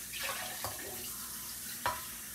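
A steady rushing hiss in a kitchen, with two short sharp clicks, a faint one just over half a second in and a louder one near the end.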